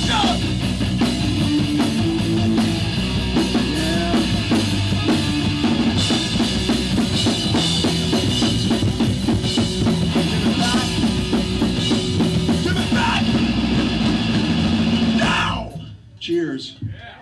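Hardcore punk band playing live: electric guitar, bass and a fast-struck drum kit, loud and steady. The song stops abruptly about fifteen seconds in.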